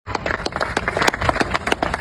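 Small crowd applauding: many scattered, overlapping hand claps.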